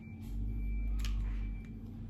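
Scissors snipping dried lavender stems inside a plastic jug: one sharp snip about a second in and a fainter one near the end, over a low steady hum.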